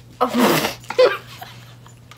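A woman's explosive burst of laughter lasting about half a second, then a shorter laugh about a second in.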